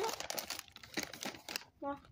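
Close-up crunching of a chocolate-covered pretzel being chewed, a dense run of crackles that stops just before the end.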